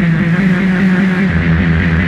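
Industrial noise music made with analog electronics: a loud, dense, distorted drone with a wavering low hum under a layer of hiss. A deeper low rumble swells in just past the middle.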